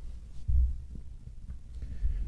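Dull, low thumps: a strong one about half a second in and another at the end, over a faint low hum.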